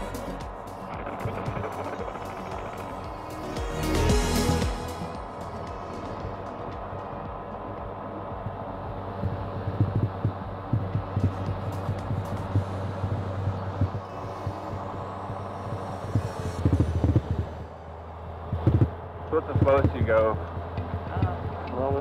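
Background music over the steady drone of the gyroplane's Rotax engine and propeller, heard inside the cockpit, with a brief swell of noise about four seconds in. A voice comes through in short bursts near the end.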